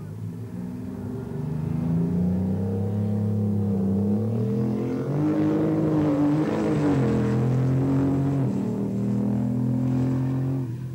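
Engine of the Bandag Bandit drag-racing semi truck revving hard as it launches and accelerates down the strip. It gets louder about two seconds in, and its pitch climbs through the middle of the run and drops back near the end.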